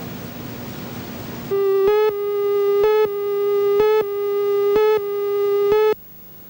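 Steady hiss with a faint hum. About a second and a half in, a loud electronic tone starts, one steady pitch broken by a short gap about once a second, and it stops abruptly.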